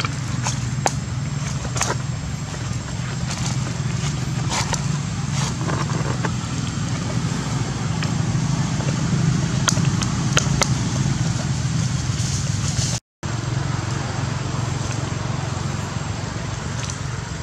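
A steady low mechanical hum, like a motor running, under scattered sharp clicks and crackles. The sound cuts out completely for a moment near the end.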